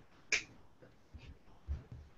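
A single sharp click about a third of a second in, followed by a few faint low bumps.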